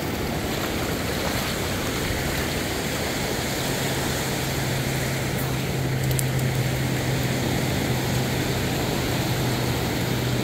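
Ocean surf washing in over the sand, a steady rushing noise, with a steady low hum underneath from about two seconds in.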